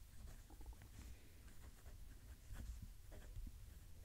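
Faint scratching of a 1.1 mm stub fountain-pen nib on a TWSBI Eco moving across notebook paper as it writes cursive, in short irregular strokes over a low rumble.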